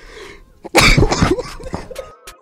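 A young man coughing hard in a quick run of rough, throaty coughs lasting about a second, starting under a second in, after speed-eating a churro.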